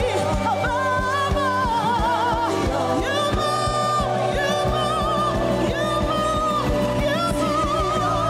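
Live worship song from a church band: a female lead vocalist singing with wide vibrato, joined by a male singer, over sustained keyboard chords and a steady drum beat.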